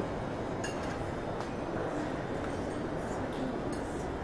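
Steady room noise of a lounge, with a low murmur of background voices and a few light clinks of glassware and tableware.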